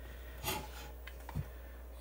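Faint handling noise of the power supply's metal chassis being gripped and shifted on a cutting mat by hand. There is a soft rub about half a second in and a small knock shortly after the middle, over a steady low hum.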